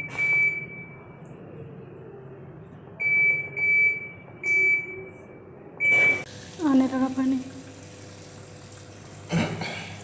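Electronic beeps from a top-loading washing machine's control panel as its buttons are pressed: one beep at the start, then four short beeps about three to six seconds in.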